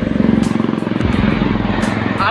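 Loud road noise while cycling in city traffic: wind buffeting a phone microphone over the rumble of passing vehicles.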